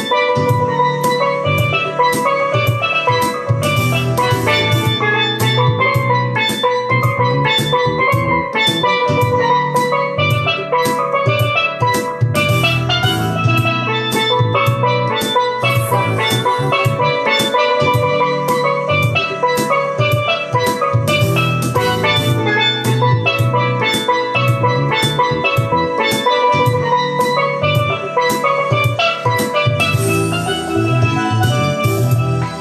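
A steel pan played with sticks: a run of quick, bright melody notes over a backing track with a bass line and a steady drum beat.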